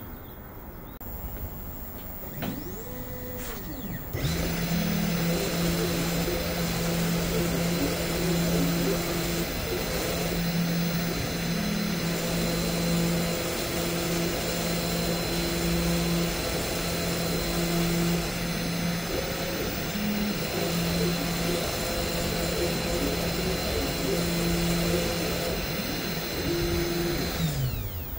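VEVOR desktop CNC router engraving plywood: its 300 W spindle motor starts about four seconds in and runs with a steady high whine. Under it the stepper motors hum in short stop-start moves as they drive the bit, and the spindle winds down just before the end.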